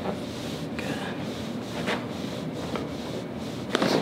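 Soft rubbing of hands on the patient's ankles and shoes, then a single short crack near the end as the chiropractor pulls on both ankles: the ankle joints releasing.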